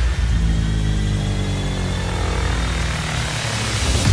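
A dramatic sound effect: a heavy drone whose pitch slowly falls, over a rushing hiss, rising out of a sharp hit and ending at another loud hit.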